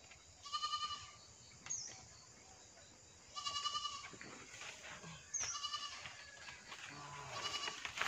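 An animal calling four times, each call a short, high, wavering cry about half a second long, evenly spread across the few seconds. Faint high chirps sound in between.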